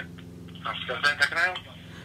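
A voice coming over a phone on speaker, thin and cut off in the highs, the call being answered about half a second in, over a steady low line hum. A short click marks the start.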